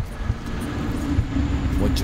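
Sci-fi sound effect of a time shift: a deep rumble that grows louder, with a low steady hum joining about half a second in.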